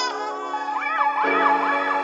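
Background music of held keyboard chords, with a high gliding tone that rises and falls several times a second, sounding like a siren.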